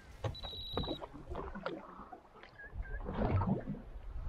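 Water slapping and splashing against the hull of a small boat in uneven bursts, loudest about three seconds in.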